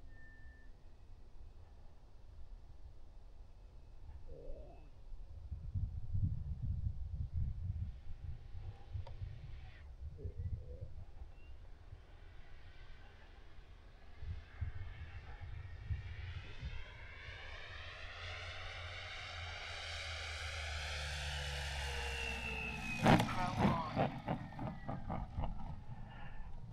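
Large radio-controlled airplane coming in low on its landing approach: its motor grows louder with a sweeping, rising sound as it nears, and falls in pitch as it passes close. About 23 seconds in, a short clatter of knocks as the landing gear touches down and rolls on the grass.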